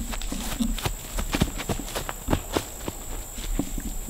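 Running footsteps through grass and brush, irregular footfalls a few per second, over a steady high buzz of insects.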